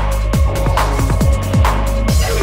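Electronic breakbeat dance music played from a vinyl DJ mix: a driving broken drum pattern of punchy kicks and crisp hi-hats and snares over a heavy, steady bass.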